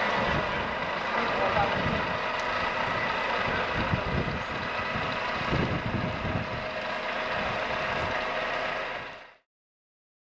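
Steady outdoor background noise with a faint hum and uneven low rumbles, cut off suddenly near the end.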